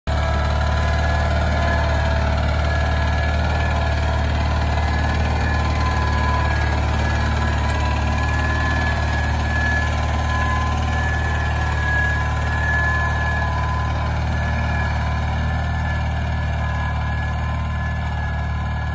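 Ariens garden tractor engine running steadily while it pulls a Brinly disc harrow through plowed soil, easing slightly in level near the end as the tractor moves away.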